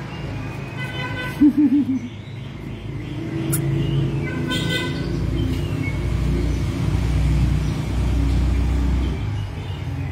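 Low rumble of road traffic that swells from about three seconds in and holds steady, with a short wavering tone about a second and a half in, the loudest sound.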